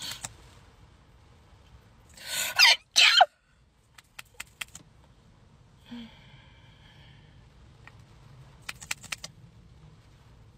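A person sneezes once, loudly, about two seconds in: a rising in-breath, a short pause, then the sharp burst. Light plastic clicks of makeup tubes and applicator wands follow, around four seconds in and again near the end.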